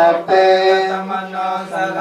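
Buddhist chanting in Pali, recited on one steady pitch with short breaks between phrases.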